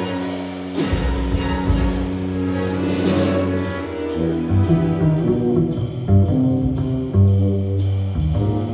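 Live jazz ensemble music: bowed strings and double bass hold long low notes, and a steady beat on the drum kit comes in about halfway through.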